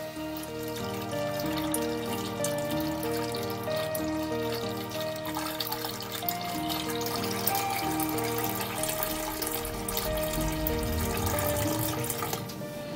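Background music with a stepping melody, over a steady trickle of wort poured from a stainless steel pot into a plastic fermenting bucket.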